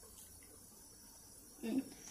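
Near silence: room tone, then a brief "mm" from a voice near the end.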